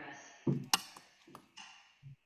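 A voice trails off, then a dull knock, a sharp click and a few fainter taps, like a desk or microphone being handled on a video call.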